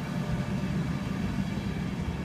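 Mark 4 coaches of an InterCity 225 rolling past the platform as the train pulls out, a steady low rumble.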